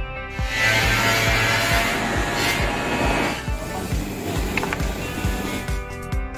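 Cordless drill runs for about three seconds, driving a screw through a wooden corner bracket into the wall. Background music with a steady beat plays under it.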